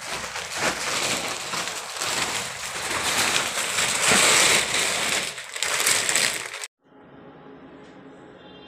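Loud, steady crackling rustle that cuts off suddenly near the end, leaving only a quiet room hum.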